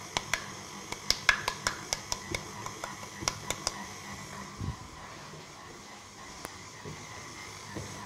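A wooden-handled utensil tapped lightly and repeatedly against a glass bowl, knocking grated lemon zest into it: a quick, irregular run of sharp clicks over the first few seconds, then one soft dull knock.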